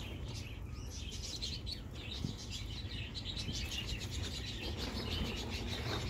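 Small birds chirping and twittering, many quick high chirps in a steady stream.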